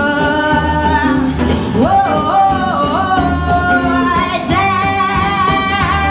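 Live blues band playing: drum kit, electric guitars, bass and keyboard under a lead melody of long held, wavering notes with slides between them about two seconds in.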